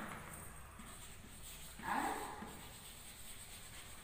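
Chalk writing on a chalkboard: faint scratching, with one short spoken word about two seconds in.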